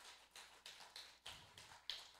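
Near silence in a pause between spoken phrases, with faint soft taps a few times a second and a slightly louder tap near the end.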